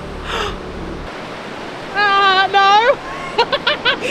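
A woman's voice giving two long, held, high exclamations, then a few quick syllables, over the steady rush of a river below. A low rumble stops about a second in.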